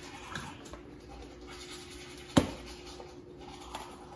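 Manual toothbrush scrubbing teeth, a quiet scratchy brushing, with one sharp click a little past halfway.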